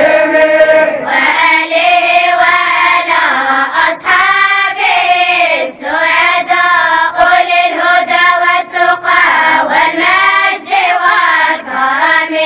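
A group of girls chanting a recitation in unison, many children's voices held on long, wavering notes with short breaks between phrases.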